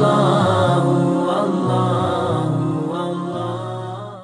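Chanted vocal music, a melody of long held, gently gliding notes, growing steadily quieter as it fades out.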